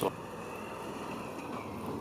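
A pause between spoken sentences: a faint, steady background hiss with a thin high tone.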